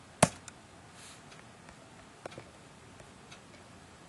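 One sharp press of a computer keyboard's Enter key about a quarter second in, followed by a few faint scattered clicks.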